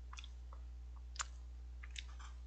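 A few short, sharp clicks and wet mouth sounds close to the microphone as a person drinks from a mug, the loudest about a second in.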